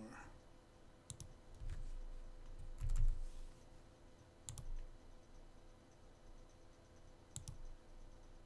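Computer mouse and keyboard clicks: a handful of sharp, separate clicks spread out, with a quick pair of clicks near the end.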